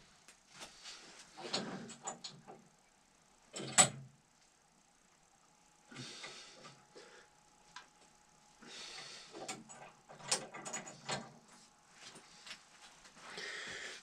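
Scattered handling noises of small metal objects being picked up and fitted together: light clicks, taps and rustling, with one sharper click about four seconds in.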